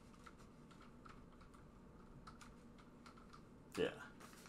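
Faint, irregular clicking of computer keyboard keys being typed.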